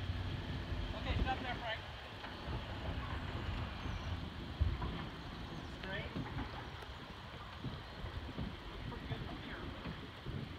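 A vehicle engine idling with a low hum that fades after the first second or so. Uneven low rumbling and faint distant voices run underneath.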